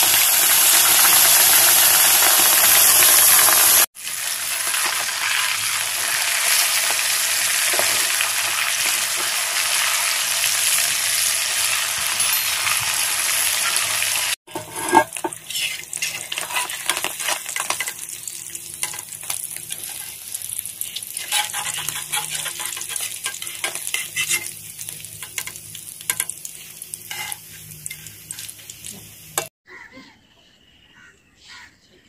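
Whole fish deep-frying in hot oil in an iron wok. For the first half it is a dense, loud sizzle. After about 15 s it thins to scattered crackling and popping as the fish brown and their moisture cooks out, and a sharp metal clink from a slotted spoon in the pan comes just after the change.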